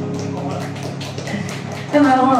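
Closing chord of a live electric-keyboard accompaniment dying away at the end of a slow Cantopop song, with faint light taps over it.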